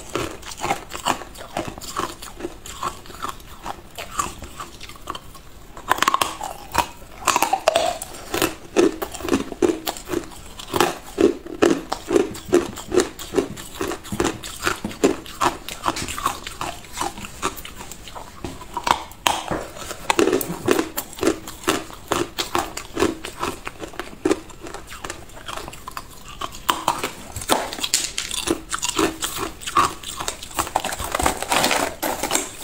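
Hard clear ice being bitten and chewed, a long run of sharp crunches and cracks coming several a second, with brief lulls between mouthfuls.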